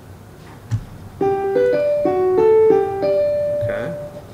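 A short electronic melody of about seven clean keyboard-like notes, the last one held longest, preceded by a single click.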